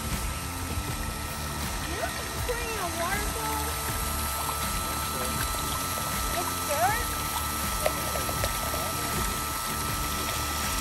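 Water from a small electric pump running down a miniature gold-mining sluice and pouring off its end, over a steady high hum.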